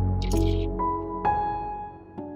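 Soft background score of sustained notes, with new plinking notes a little after the start, about a second in and near the middle. A brief high hiss sounds about a quarter second in, as the glass lid of a cooking pot on the stove is handled.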